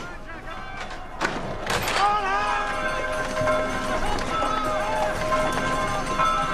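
Film soundtrack: two sharp knocks about a second in, then held music notes under shouting voices.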